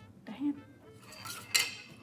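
Wooden Uno Stacko block being worked out of the tower, with a light wooden clack about one and a half seconds in.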